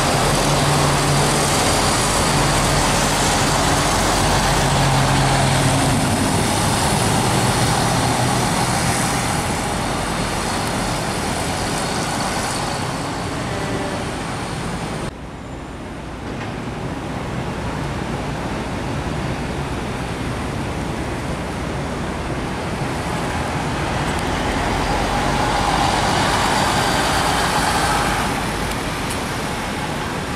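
MAN single-deck city bus engines running at a bus interchange, with a steady low engine hum. The sound cuts off suddenly about halfway and switches to a second MAN bus, which grows louder as it drives off near the end.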